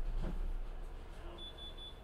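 An electronic beeper sounding three short, high beeps in quick succession about one and a half seconds in, over a steady low hum.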